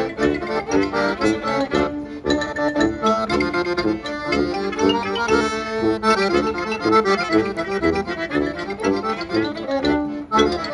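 A klezmer band playing a lively tune live, with accordion to the fore over violin, marimba, sousaphone and bass drum.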